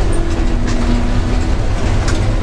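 Bizon combine harvester running under heavy load while cutting rye, heard from inside the cab: a loud, steady low rumble of the engine and threshing machinery with a constant hum over it.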